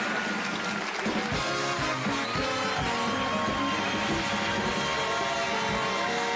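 The Tonight Show big band playing a brass-led tune with held horn notes over a steady drum beat, as a break-in to the commercials.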